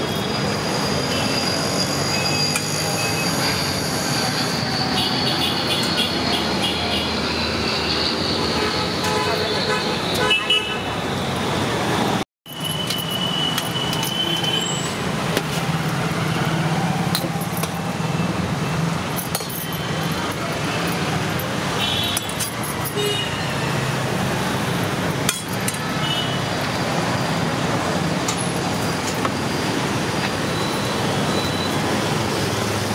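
Steady roadside traffic noise, with people talking in the background and an occasional short horn toot.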